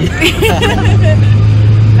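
Brief voices inside a car cabin over a steady low drone, which drops away at the start and returns about a second in.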